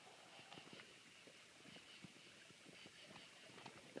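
Near silence: faint outdoor room tone with a few soft scattered ticks.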